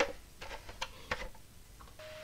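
A sharp click at the start, then a handful of fainter, irregular ticks and taps: handling noise as a woodturner's face-shield visor is pulled down and a bowl gouge is picked up.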